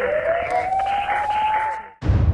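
Title-logo sound effect for a TV news programme: a single tone glides slowly up in pitch over a rushing noise, then cuts off abruptly just before the end.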